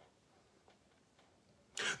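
Near silence: room tone in a pause of speech, with a man's voice starting again near the end.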